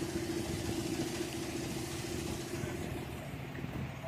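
Motorboat engine running steadily with a constant hum, over an even hiss of wind and water.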